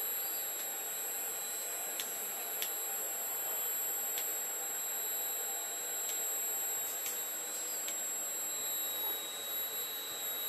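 Steady high-pitched electronic whine over a low hum, with faint clicks about once a second as FANUC teach pendant keys are pressed to jog the robot.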